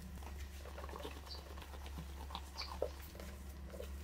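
Hands rubbing coarse salt into a raw octopus in a plastic colander, making scattered small squishes and gritty scrapes, the salt scrub that cleans the slime off the octopus. A steady low hum runs underneath.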